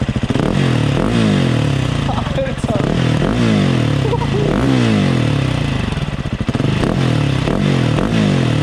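Husqvarna 701's single-cylinder engine through an aftermarket Remus exhaust, under way and revving hard. Its pitch climbs and drops back several times as it pulls through the gears.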